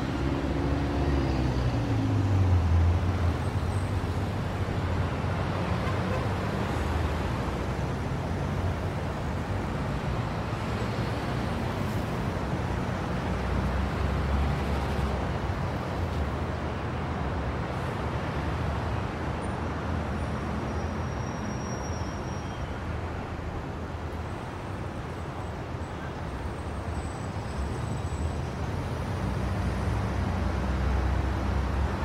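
City street traffic at night: a steady wash of passing cars and other road vehicles. In the first few seconds one vehicle's engine note drops in pitch as it goes by.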